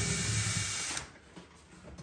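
Cordless drill-driver running steadily, unscrewing the old motor of a VELUX roof window from its mounting, then stopping about a second in.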